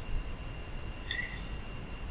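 Quiet room tone: a faint steady hiss with a low hum, and one faint brief sound about a second in.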